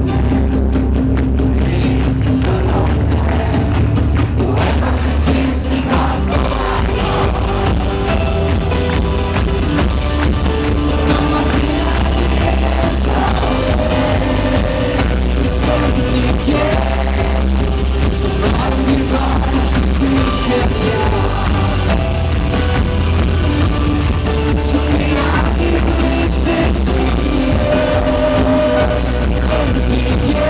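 Rock band playing live at a steady loud level: drums and a heavy bass line under guitars, with a male singer's vocals over the top. The full band comes in just before this passage.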